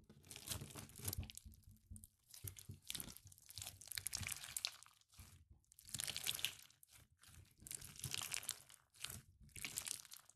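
Clear slime packed with small beads being squeezed and pressed by hand, giving crunchy, crackling squelches that come in repeated waves with short pauses between.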